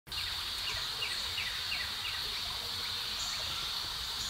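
Outdoor garden ambience: a steady high insect drone, with a bird's run of short falling chirps, about three a second, in the first half, over a faint low rumble.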